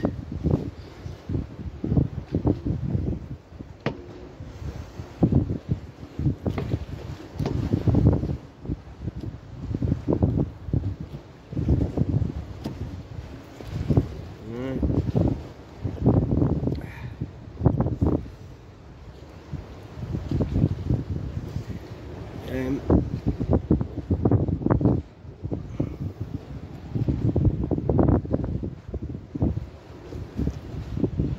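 Wind buffeting and rubbing on the microphone, rising and falling in irregular surges every second or two, with a few sharp knocks.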